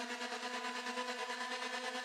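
Electronic synth drone with heavy reverb, a held chord of steady tones chopped into a fast, even flutter by a gate effect, heard on its own without drums.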